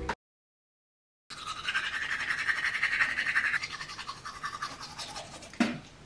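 A small electric motor buzzing steadily with a rapid pulse, starting about a second in after a moment of dead silence and stopping shortly before the end.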